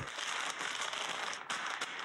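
Crinkling and rustling of a photo light's black cloth cover and diffusion material being handled on its stand, with a few sharp clicks near the end as it is adjusted.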